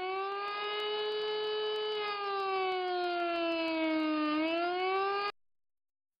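A siren wailing in one long tone whose pitch sags slowly and then rises again, cutting off abruptly about five seconds in.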